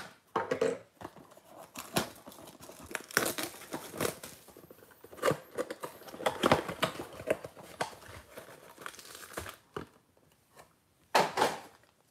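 Plastic shrink wrap crinkling and tearing as it is stripped off a cardboard trading-card box, then the box's cardboard flap pulled open; irregular rips and rustles, with a short pause about ten seconds in.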